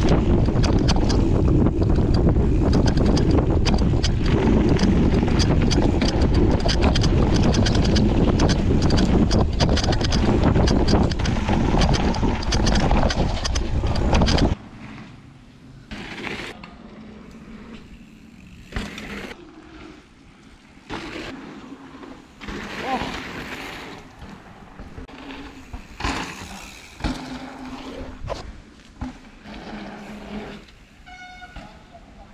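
Mountain bike ridden fast down a dry dirt trail, heard from a bike-mounted camera: loud wind on the microphone over tyre rumble and rattling. It cuts off suddenly about halfway, leaving a much quieter stretch with scattered knocks as a rider goes past.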